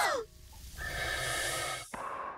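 Several cartoon girls' voices gasping, trailing off at the start. Then, after a short pause, an exterminator breathes through a respirator mask: one hissing breath about a second long, ended by a sharp click.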